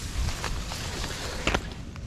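Rustling and brushing as someone pushes through tall riverbank weeds, with a low rumble of handling and wind on the microphone and a sharp click about one and a half seconds in.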